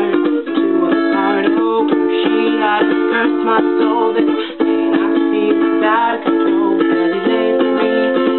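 Ukulele strummed in a steady rhythm, the chord changing every two to three seconds.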